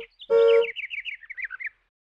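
A cartoon horn honks briefly: the tail of one honk at the start, then a second short honk. It is followed by a quick twittering run of about ten bird chirps that step down in pitch and stop shortly before the end.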